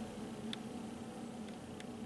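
Quiet room tone: a faint steady hum and hiss, with two faint light clicks, one about half a second in and one near the end.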